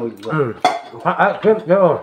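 Crockery clinking once on a ceramic plate, with men's voices at the table.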